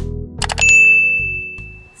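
Animated subscribe-button sound effect: a quick run of mouse clicks, then a bright notification-bell ding that rings out and fades away, over the last of the intro music.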